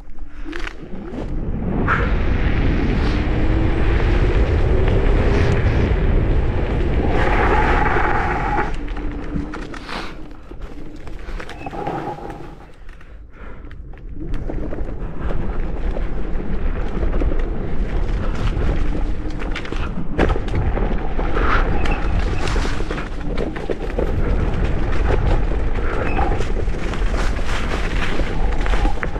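Electric scooter riding over a leaf-strewn dirt trail: heavy wind rumble on the microphone mixed with tyre noise on the rough ground. A faint rising motor whine comes in about three seconds in, and the noise drops for a few seconds near the middle as the scooter slows.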